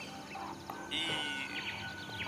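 Quiet film-trailer soundtrack: a music bed with birds chirping, a rapid trill about a second in, and a held high tone from then on.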